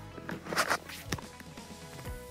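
Background music with steady held notes, with a few footsteps about half a second and a second in.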